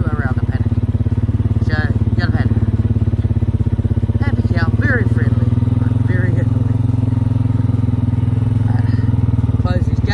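Farm motorbike engine running at low speed, a steady drone with a fast, even beat, as the bike creeps along behind the cows.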